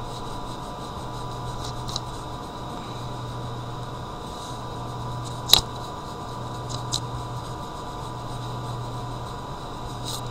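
Pencil drawing on paper over a steady low background hum, with a few faint scratches and one sharper tap about five and a half seconds in.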